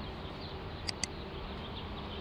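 Steady buzzing hum with a faint held tone. About a second in come two quick, sharp mouse-click sound effects, a double click.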